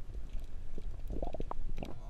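Low rumbling underwater noise picked up by a submerged camera, with a quick cluster of short gurgling clicks in the second half.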